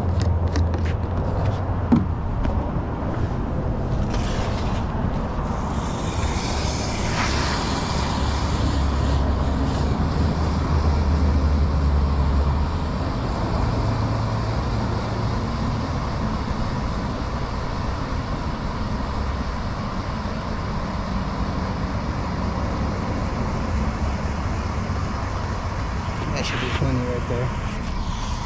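Water rushing steadily from a garden hose spray nozzle into a plastic bucket, whipping car-wash soap into foam.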